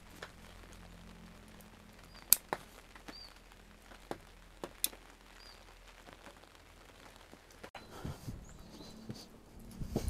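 Quiet forest background with a small bird chirping softly several times, and sparse sharp taps and clicks, the loudest a bit over two seconds in. Near the end come low thuds of footsteps on the ground.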